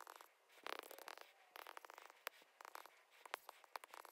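Faint scratching and tapping of a stylus writing on a tablet screen, in short clusters of quick strokes.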